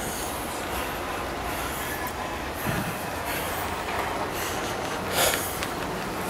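Steady rumble and hiss of wind and traffic on a snow-covered city street in a blizzard, with soft footsteps in snow. There is a brief louder burst of noise about five seconds in.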